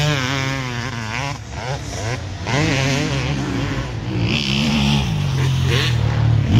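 Motocross bike engines revving, their pitch rising and falling quickly over a steady lower drone.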